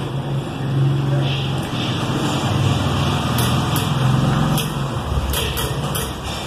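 A motor vehicle's engine, a low hum that swells through the middle and drops away near the end, as of a vehicle passing by. A few short clicks sound over it.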